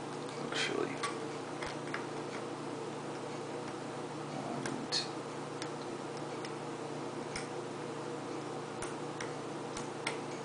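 Faint, irregular metallic clicks and ticks of a lock pick working the pins of a Corbin small-format interchangeable core under tension, over a steady low hum.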